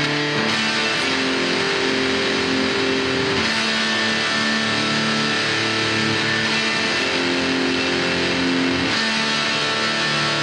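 Distorted electric guitar played through an amplifier, a Telecaster-style guitar strumming a heavy riff of held chords that change every couple of seconds.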